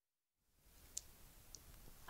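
Near silence: faint studio room tone with two brief faint clicks, one about a second in and another half a second later.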